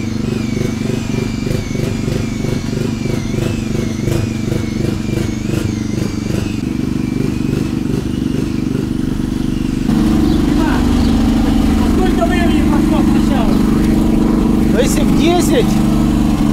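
Electric angle grinder grinding lettering off a marble memorial plaque: a high whine whose pitch wavers as the disc is pressed into the stone. About ten seconds in the sound changes to a louder, steadier, lower hum.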